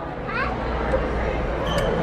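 Indistinct voices and children's chatter in a busy shop, with a steady low hum that comes in about half a second in.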